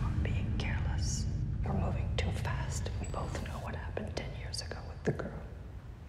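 A woman whispering over a steady low rumble.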